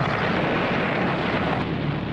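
A steady engine roar with a loud rushing noise over a low drone, easing somewhat near the end.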